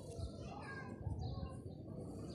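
Faint background voices, with a low rumbling noise underneath.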